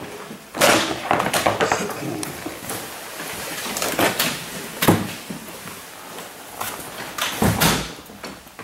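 Several knocks and clunks of tools being handled at a snowmobile's steering, the loudest about five seconds in, with the echo of a small room.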